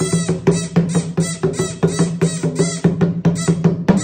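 Small dholak, a two-headed barrel drum, struck by hand in a quick, even beat of about four strokes a second.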